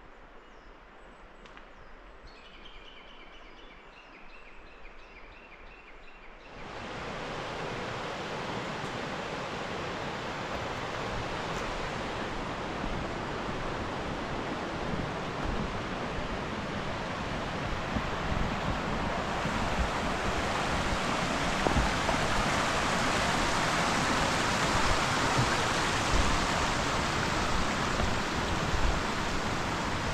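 Shallow mountain stream rushing over stones, cutting in suddenly a few seconds in and growing louder later on. Before it, quiet woodland with a faint bird call.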